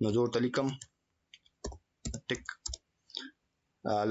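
Computer keyboard keys tapped in a short run of about five quick clicks as a word is typed. A man's voice is heard briefly before the clicks and again just before the end.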